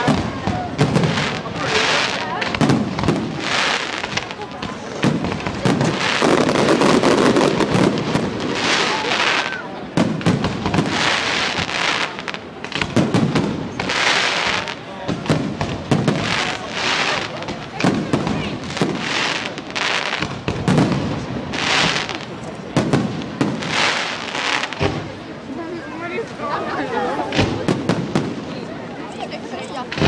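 Fireworks display going off in a steady run of bangs, about one a second, each followed by a sharp crackling hiss of sparks.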